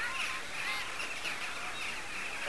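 A flock of birds calling, many short high chirps overlapping in a continuous chatter.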